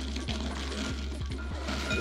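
Shelled pecans poured from a bag, pattering and clicking into a glass bowl, over background music with a steady low bass note.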